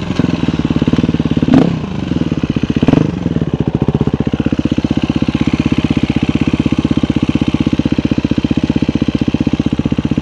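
KTM 350 EXC-F's single-cylinder four-stroke engine, with two brief loud surges in the first three seconds, then settling into a steady idle with an even, fast pulse.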